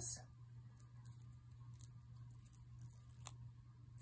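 Faint, scattered clicks and rustles of hands handling a nail polish strip and its plastic backing, over a steady low hum.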